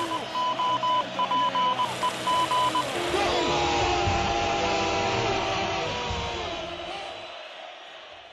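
Intro-montage audio: a run of short beeps at one pitch, irregularly spaced like Morse code, over a voice and background bed for about three seconds, then a louder mix of broadcast voices and crowd-like noise that fades out near the end.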